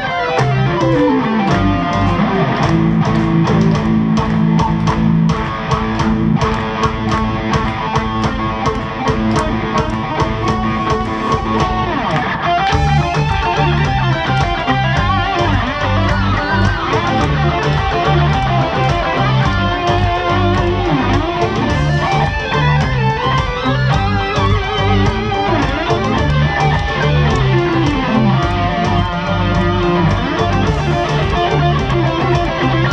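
Instrumental rock played live on a distorted eight-string electric guitar and a 3Dvarius electric violin. A falling slide opens it and another comes near the end, and after about twelve seconds a heavier, pulsing low end comes in.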